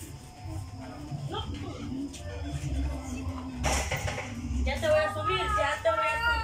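A young child's high, wordless voice rising and falling in the last second or so, over a low rumble from the phone's microphone, with a short burst of noise just past the middle.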